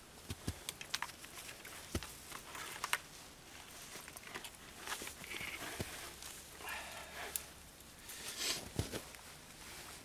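Scattered small clicks, ticks and rustles of a wire snare being handled and run up high on a tree, with gloved hands brushing the branches.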